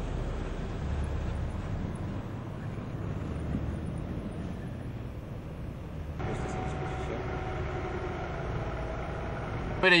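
Vehicle engines running at a standstill and passing traffic, a steady low rumble. From about six seconds in, a steadier droning tone with faint voices joins it.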